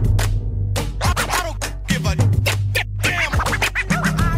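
Hip-hop track in an instrumental break between rap verses: a looping beat of heavy bass and drums, repeating about every two seconds, with turntable scratches over it.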